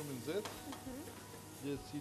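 Peppers and fish sizzling in a hot wok as they are stir-fried with a spatula. Short bits of voice come over it near the start and again near the end.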